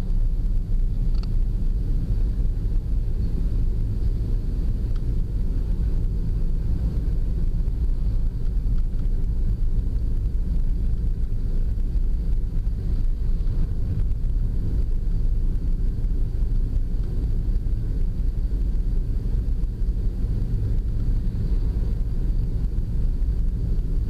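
Car driving at town speed: a steady low rumble of road and engine noise.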